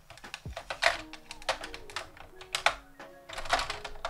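Plastic make-up containers clicking and clattering, a run of irregular sharp clicks as they are rummaged through and handled.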